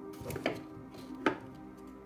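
Two sharp knocks on a hard surface, the second and louder a little under a second after the first, over soft ambient background music.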